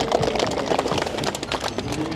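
Outdoor crowd noise: many irregular sharp clicks and taps over a steady hiss.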